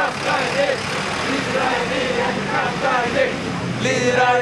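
A box truck driving past close by: steady engine and road noise, with the voices of a crowd over it.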